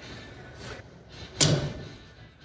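A single sharp clunk about one and a half seconds in, over faint background noise.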